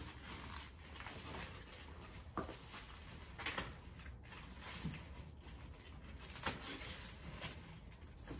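Faint rustling and crackling of dry banana leaves and a plastic trash bag as the leaves are stuffed into a bin, with a few sharper crackles.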